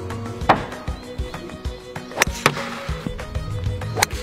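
Background music with a steady beat, over sharp impacts from golf shots hit at a car: one about half a second in, then a louder crack about two seconds in, quickly followed by another knock.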